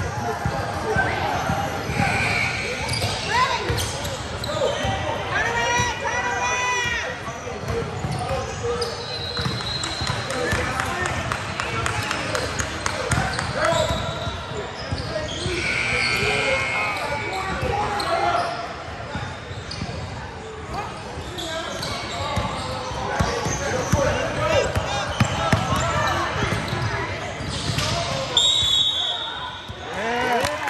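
Basketball bouncing on a hardwood gym floor during a game, with players' and spectators' voices echoing in the large hall.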